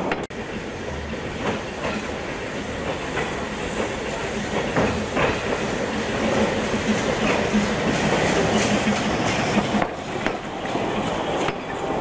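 Narrow-gauge steam locomotive 'Plettenberg', a Henschel-built engine, running with its train along the track, the wheels and running gear clattering steadily with scattered sharp clicks. The sound cuts out for an instant near the start.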